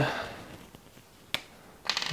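One sharp plastic click from handling a felt-tip marker, most likely its cap pulled off, a little over a second in, with a fainter tick just before the end.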